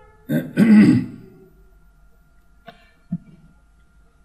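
A man clearing his throat once, a short loud rasp just under a second long near the start. Later comes a faint click and then a soft knock.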